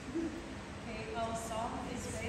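Faint voices in a large hall: a brief low vocal sound near the start, then quiet talk from about halfway through.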